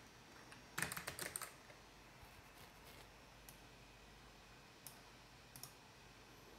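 Computer keyboard typing, faint: a quick run of keystrokes about a second in, then a few single key presses spaced out through the rest.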